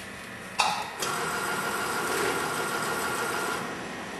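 Weight-type powder filling machine discharging sugar: a sharp clack about half a second in, then the feed running steadily with a thin whine for about two and a half seconds, stopping shortly before the end as the dose drops into the funnel.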